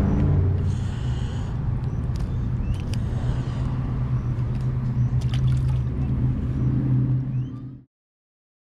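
A steady low engine drone, with light water splashes and a few sharp clicks close by. The sound cuts off suddenly just before the end.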